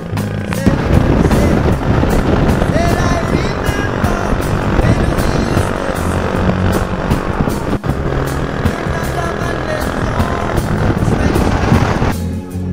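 A motorcycle riding at road speed, with heavy, rough wind and engine noise on the onboard microphone. A song with singing is faintly audible underneath.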